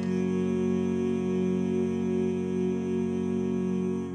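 Synthesized four-part male chorus of Vocaloid voices holding one steady, sustained chord without clear words.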